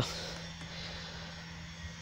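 Faint, steady outdoor background noise with a low hum and no distinct events, like distant engine noise.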